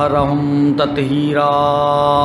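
A man's voice intoning the Arabic opening sermon in a slow chant. Two long, level held notes are broken by a short breath about a second in.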